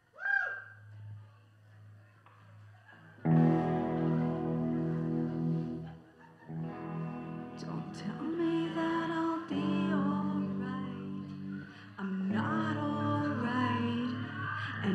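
A rock band starting a song live. A brief gliding electric guitar sound over amplifier hum, then the electric guitar, bass and drums come in about three seconds in, with singing joining later.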